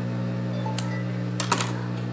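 Steady hum of an industrial overlock machine's motor running idle, with a few sharp clicks about one and a half seconds in.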